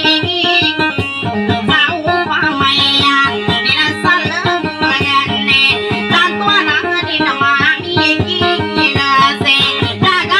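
Guitar played in dayunday style: a fast, even run of plucked notes carrying a busy melody.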